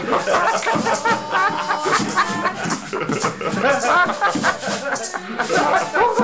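Live mento band playing, with maracas shaking a steady rhythm over the music and voices.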